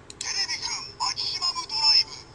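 Electronic voice call and sound effect played through the small, tinny speaker of a Kamen Rider W Double Driver toy belt and its Gaia Memory.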